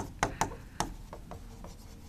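Stylus writing on an interactive display board: a string of short taps and scratches as figures are written, the sharpest tap right at the start.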